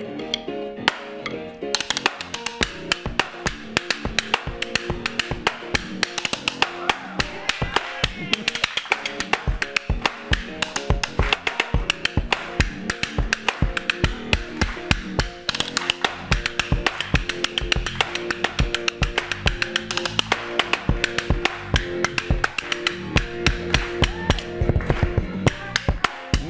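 Fast drumstick solo on a makeshift kit: sticks striking a rubber practice pad as the snare and a metal crutch as the hi-hat, in dense rapid patterns. It starts about two seconds in, over a steady pitched tune, and stops just before the end.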